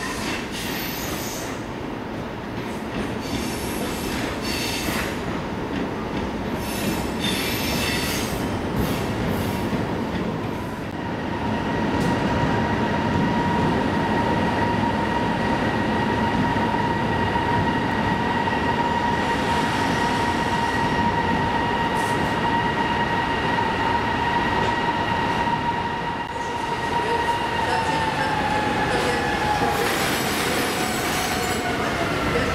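EP20 electric locomotive rolling slowly along the platform track. There are short high screeches and squeals from the wheels during the first ten seconds. Then, about eleven seconds in, a steady high whine sets in and slides down in pitch near the end.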